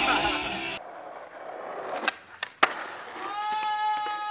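Skateboard rolling over pavement, with three sharp clacks of the board about two seconds in. A little after three seconds a long, level call from a person's voice begins and holds. A louder sound cuts off abruptly under a second in.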